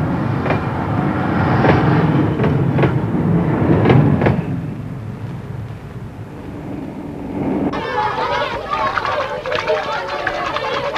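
Electric train running past: a heavy rumble with repeated clacks of wheels over rail joints, fading away by the middle. About eight seconds in it cuts abruptly to outdoor voices and children's chatter.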